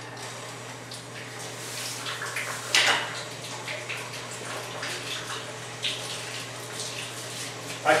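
Water spraying from a hose nozzle into a concrete utility mop sink, a steady hiss, with a sharp knock about three seconds in.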